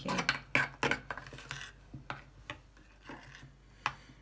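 Metal spoon stirring a thick mayonnaise and sour-cream sauce in a ceramic bowl, scraping and clinking against the bowl's sides. The strokes come quickly for the first second and a half, then only a few scattered clicks follow.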